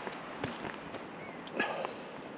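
Outdoor wind hiss on the microphone, with two short knocks or clicks: one about half a second in and one near the end.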